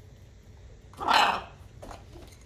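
A parrot gives one short, harsh squawk about a second in, lasting about half a second.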